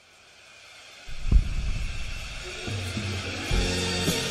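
Instrumental backing track starting up: a rising swell of hiss, then bass and drum hits come in about a second in, with held chords joining after that.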